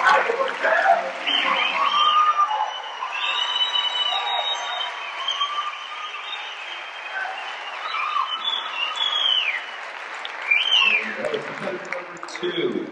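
Audience applauding in a hall, with shouted cheers rising and falling over the clapping; it dies away near the end as a man's voice comes in over the PA.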